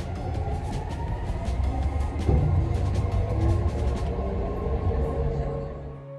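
Metro train running, a heavy rumble with frequent clicks and clatter from the car, and a whine rising in pitch about three seconds in as the train picks up speed.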